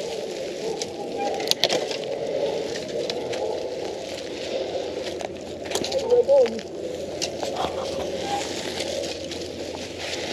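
Bicycle being ridden over rough trail ground: steady tyre and ground noise with scattered clicks and knocks from the bike, and a short louder wavering sound about six seconds in.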